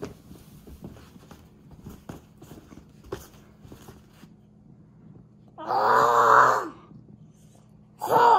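A young child gives one long, loud yell a little past the middle, after several seconds of faint rustling and soft knocks from stuffed toys being moved about.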